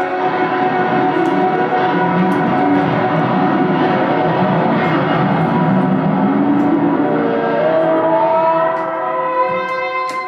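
Live band playing loud, dense music built on sustained, ringing chords, with several held tones gliding upward in pitch near the end.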